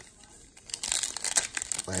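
Foil wrapper of a 2019 Bowman baseball card pack crinkling and tearing as it is ripped open by hand, starting under a second in.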